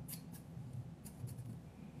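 Scissors snipping through a fringe of hair: a few short snips, two near the start and two or three more about a second in.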